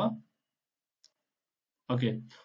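A man's speech trails off, then near silence broken by a single faint, sharp click about a second in, before his speech resumes near the end.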